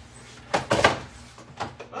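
A quick cluster of hard knocks and clatter about half a second in, then a few lighter taps, as crafting tools are handled and things fall over.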